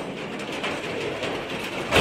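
A steady noisy wash with scattered faint clicks, the opening sound effects of a podcast intro, swelling into a louder hit at the very end that leads into music.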